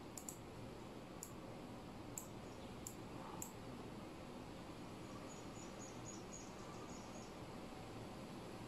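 Computer mouse clicking, about six quick clicks in the first three and a half seconds, two of them close together right at the start, over a faint steady background hiss.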